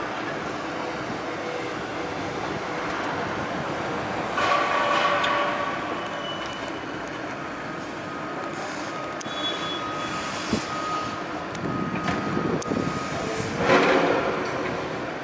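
Heavy construction machinery running on a building site: a steady mechanical din with high, metallic squealing tones. It swells louder about four seconds in and again near the end, and a steady high whine holds for several seconds in the middle.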